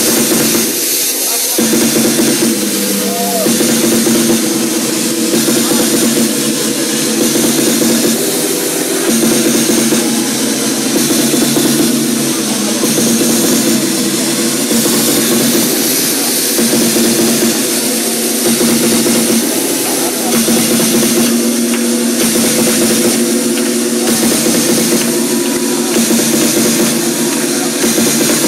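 Techno DJ set playing loud and continuous over a club sound system, heard from the DJ booth.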